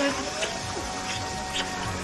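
Steady hiss of falling rain, with soft background music holding long, sustained notes.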